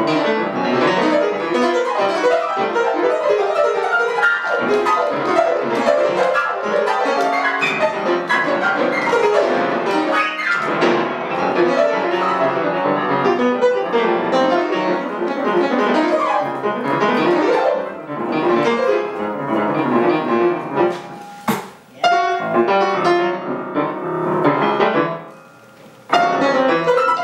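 Grand piano played solo: dense, fast-moving notes and chords without a break, with one sharp struck accent about four-fifths of the way through and a short drop in level just after it and again at the very end.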